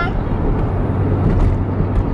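Steady road and engine noise inside a moving car's cabin: a low drone with a hiss over it.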